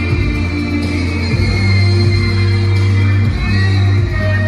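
Loud amplified live music with heavy, held bass notes, in a stretch where the singer's voice does not stand out.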